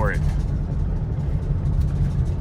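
Steady low rumble of engine and tyre noise inside the cabin of a moving vehicle.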